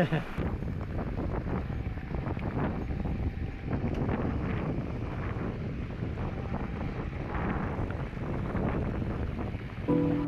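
Wind buffeting the camera microphone on a moving e-mountain bike, over a steady rumble and crunch of knobby tyres on a gravel dirt road.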